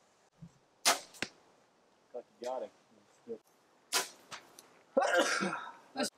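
Two compound bow shots, each a sharp crack about three seconds apart, and each followed a fraction of a second later by a fainter crack that is most likely the arrow striking a target.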